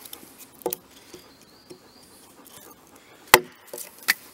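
Hatchet blade chopping into a small piece of wood held against a log: two sharp blows about two and a half seconds apart, the second the louder, with a few lighter knocks of wood on wood.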